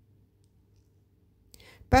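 Near silence with a faint low hum. A brief soft hiss comes about one and a half seconds in, and a voice starts speaking at the very end.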